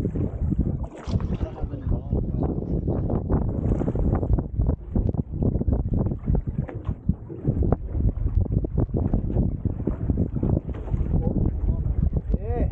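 Wind buffeting the camera's microphone on an open boat at sea, a continuous low rumble broken by uneven gusty thumps.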